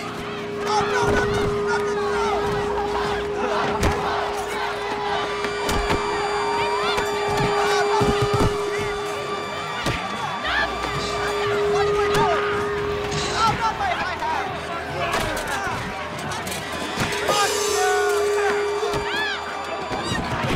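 Rowdy crowd commotion, many voices shouting and yelling at once, over a steady droning tone that cuts out and returns twice, with scattered knocks and thuds.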